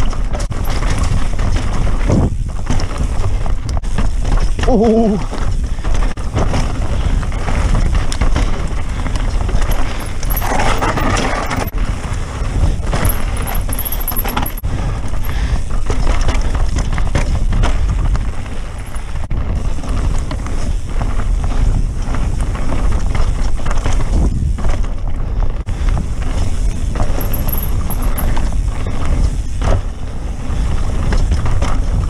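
Santa Cruz Megatower mountain bike ridden fast down rough singletrack: continuous wind rush on the microphone over tyres on dirt and rock, with the frame and chain rattling and clicking over the bumps.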